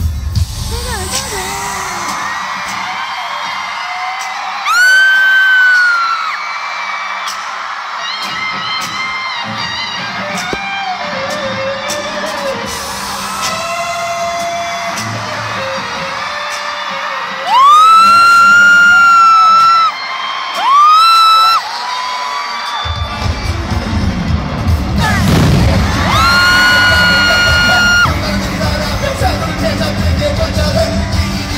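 Concert arena crowd screaming and cheering over live music whose bass drops out and comes back about 23 s in. Four loud high-pitched held screams close to the microphone stand out, one about 5 s in, two close together around 18 to 21 s, and one near the end.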